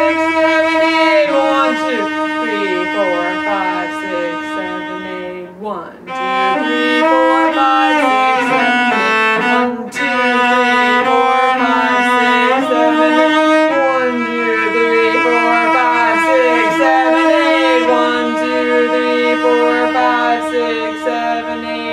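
Cello bowed through a tango melody with grace notes, in a steady rhythm over a held lower note, with a short break and an upward slide about six seconds in.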